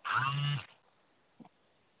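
A person's brief wordless vocal sound, one held hum at a steady pitch lasting under a second, heard over video-call audio; a faint click follows about a second and a half in.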